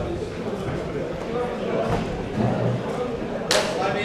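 Voices and chatter in a large hall, with one sharp strike about three and a half seconds in that rings briefly, plausibly the boxing bell signalling the start of a round.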